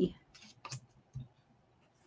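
A few light, sharp clicks and taps from fingers and fingernails handling small die-cut paper hearts on a cutting mat while foam adhesive dimensionals are pressed onto them.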